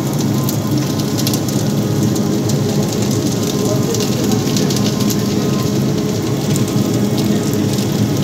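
Batasa-making machine running: a steady machine hum under a dense stream of small clicks from hardened sugar drops tumbling off the conveyor belt into the tray and onto the sack.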